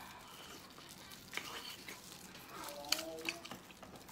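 Faint close-up chewing with a few short wet mouth clicks, and a brief faint voice-like hum near the end.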